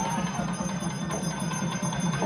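Bells ringing over the noise of a crowd.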